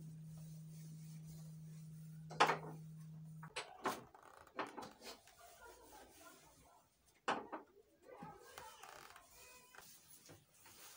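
Light knocks and clinks of objects being moved about on a TV stand as it is wiped down with a cloth. Under them runs a steady low hum that cuts off suddenly about three and a half seconds in.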